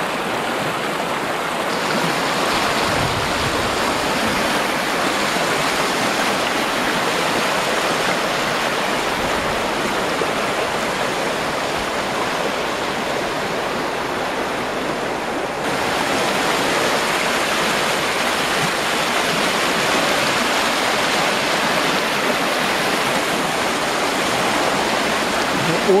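Steady rush of a small river in spring flood pouring in white-water rapids over stepped dolomite ledges. The rush shifts slightly about two seconds in and again around sixteen seconds as the view changes.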